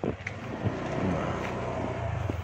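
A motor vehicle running nearby: a steady low engine hum with rushing noise that swells in at the start and then holds steady.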